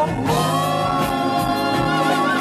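Live band playing through a PA system, with singers holding a long, steady harmonized note over the band from about a quarter second in.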